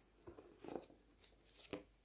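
Faint rustling of a paperback book's pages as it is opened and flipped through by hand, four or five short paper rustles in quick succession.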